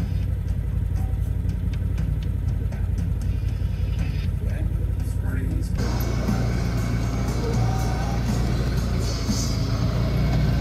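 Side-by-side utility vehicle's engine running with a steady low drone as it drives. A little under six seconds in, the sound turns louder and rougher, with more rushing noise from the moving vehicle.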